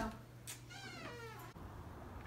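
A cat meowing once, a short call that falls in pitch.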